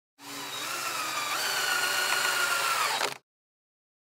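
Television static sound effect: a loud hiss with faint buzzing tones and a low hum, jumping up in pitch about a second in. It ends in a quick downward sweep and cuts off suddenly just after three seconds.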